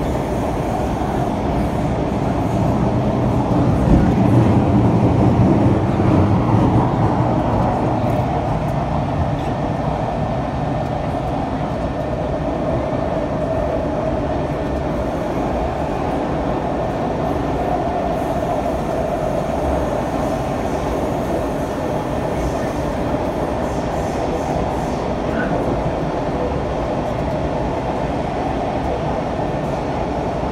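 Interior running noise of a C651 metro train in motion: a steady rumble with a constant whine above it. The rumble swells louder from about four to seven seconds in.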